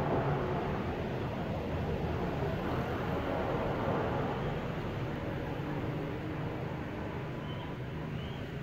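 Steady low background rumble and hiss with no distinct event, fading slightly toward the end.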